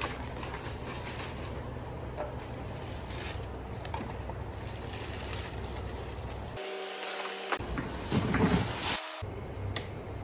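Hands unwrapping and handling items in plastic bags, with crinkling and rustling over a steady low hum. The handling gets louder about eight seconds in.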